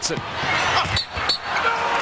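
A basketball bouncing on a hardwood court during a fast break, with a few short high sneaker squeaks over steady arena noise.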